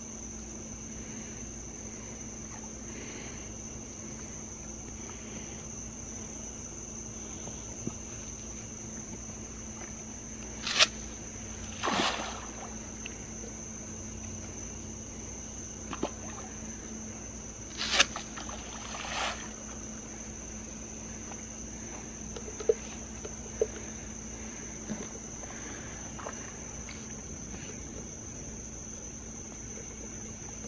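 A steady, high-pitched insect chorus, broken by a few sudden splashes of channel catfish taking floating feed pellets at the pond surface; the loudest come in two pairs near the middle, with a few fainter ones later.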